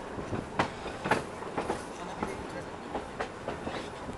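A railway carriage running along the track, heard through an open window: steady running noise with irregular sharp clicks and knocks from the wheels on the rails.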